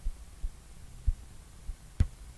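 Several faint, irregular low thuds from a stylus striking a pen tablet during handwriting, over a steady low hum. The loudest thud comes about a second in.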